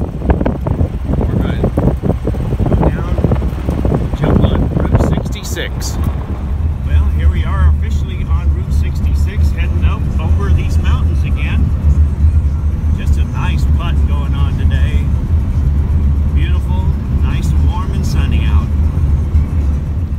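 Air-cooled Volkswagen Beetle engine and road noise heard from inside the moving car: a rough, rattly din for the first few seconds, then a steady deep drone at cruising speed.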